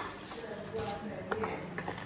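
Faint voices in the room, with a couple of light clicks as food and dishes are handled on the table.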